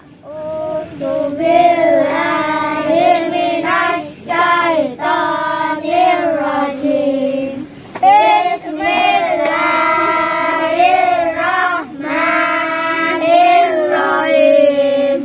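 A group of children singing together in unison, in long melodic phrases with held notes and a short pause about eight seconds in.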